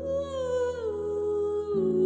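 Background music: a slow song in which a voice hums a melody over steady held chords, the note rising at the start and then gliding down twice.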